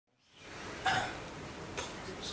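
Steady background hiss fading in, with one short vocal sound like a cough or hiccup about a second in and a faint click near the end.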